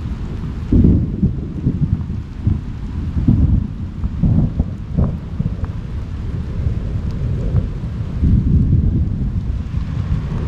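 Thunder rumbling from an approaching storm, a continuous low rumble that swells and falls in several rolling surges.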